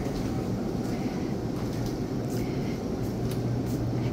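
Steady low hum and even background noise of a shop interior, from refrigerated display cases running.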